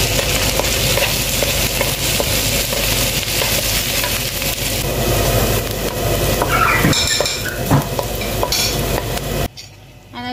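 Chopped onion sizzling as it fries in hot oil in a pan, stirred with a wooden spatula that scrapes and knocks against the pan. The sizzle cuts off suddenly near the end.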